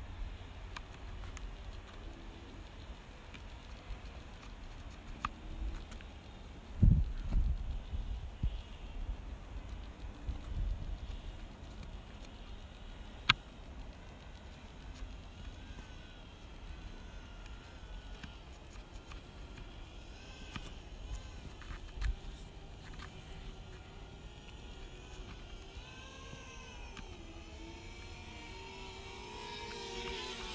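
Wind buffeting an outdoor microphone: a low rumble throughout, with stronger gusts about a quarter and a third of the way in and a couple of sharp clicks.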